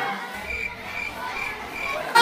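Four short, high chirps repeated evenly about twice a second, over a low hum.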